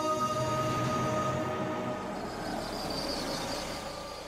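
Background music holds a few sustained notes that fade out about a second and a half in. Then a car, a Toyota Innova, comes up a paved driveway: a rising rumble of engine and tyres as it approaches and pulls up.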